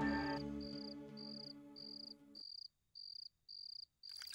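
A cricket chirping steadily, short high chirps about three a second. Over the first half, the tail of a background music cue fades and then cuts off abruptly about two and a half seconds in, leaving the chirping alone.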